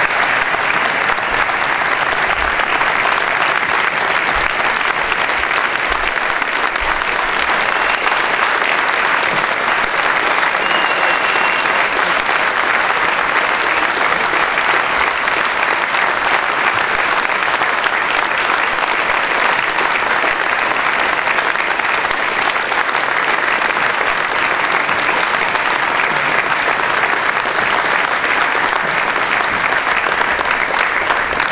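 Large crowd applauding, a long, steady ovation with no let-up.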